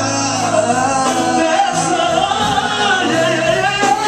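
Live gospel music: a singer holds one long, wavering sung line through the microphone and PA over the band's steady low accompaniment.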